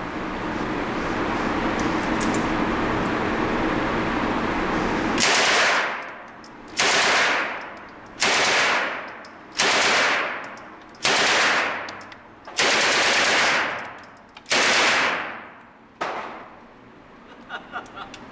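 A Swedish K M/45-pattern 9mm submachine gun (Egyptian Port Said) firing full-auto from an open bolt. After about five seconds of steady loud noise, seven short bursts follow, roughly one every one and a half seconds. Each burst rings out and decays in the echo of an indoor range.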